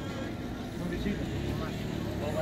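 Voices talking at a busy street-market stall, over a low, steady rumble of traffic.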